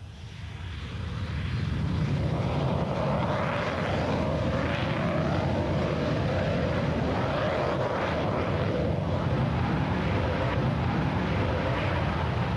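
North American XP-86 jet fighter's turbojet engine at takeoff power, swelling over the first two seconds and then running steadily with a loud, even rush as the aircraft rolls and lifts off.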